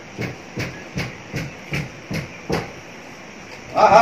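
Playing cards being dealt onto a hard floor, each landing with a light slap, about seven in a steady rhythm of two or three a second that stops about two and a half seconds in.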